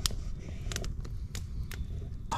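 Wood campfire crackling, with scattered sharp pops over a low steady noise.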